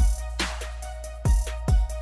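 Electronic background music with a drum-machine beat: deep kick drums that drop in pitch, three of them, a sharp snare-like hit, and a held synth note underneath.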